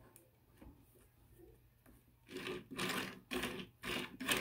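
Small plastic toy car rolled back and forth across a tabletop, a few short rolling rasps starting about halfway through, its front wheels not touching the table.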